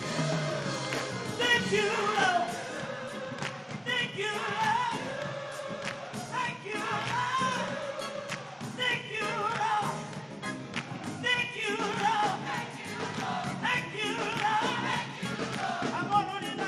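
Live gospel music: a man singing lead into a microphone over a band with drums and cymbals, his voice sliding and bending through melodic runs.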